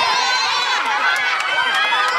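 Several voices in a crowd shouting and calling out over one another, with quick running footsteps among them.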